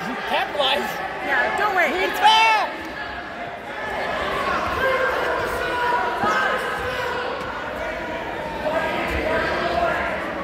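Spectators shouting and talking in a gym hall, a mix of voices throughout, with several short, high rising-and-falling squeaks or shouts between about one and three seconds in.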